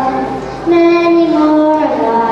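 A young girl singing into a microphone: one note trails off, then a new note starts about two-thirds of a second in and is held for about a second before sliding down.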